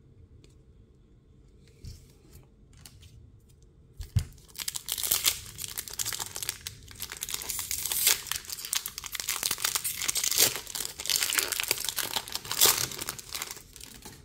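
Foil wrapper of a Pokémon trading card booster pack being torn open and crinkled by hand: a dense, crackling rustle that starts about four seconds in, after a quiet stretch, and goes on to the end.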